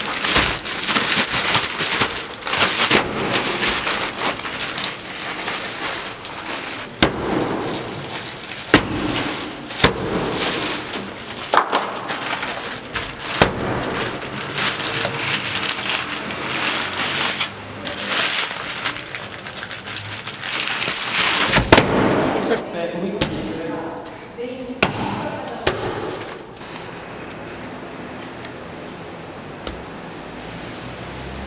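Bubble wrap and plastic sheeting crinkling and crackling under someone kneeling and working on it, with many sharp pops and clicks. It quietens for the last few seconds.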